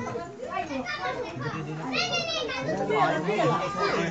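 Several voices talking over one another, children's among them, with a high-pitched child's voice standing out about halfway through.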